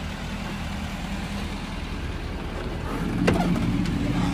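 A 6.7L Power Stroke V8 turbo diesel idling steadily, with a low, even hum. A couple of sharp clicks come near the end as the truck's door is opened.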